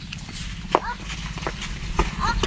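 A few short voiced cries and yelps with scattered scuffing clicks as people struggle and drag a body over a dirt road.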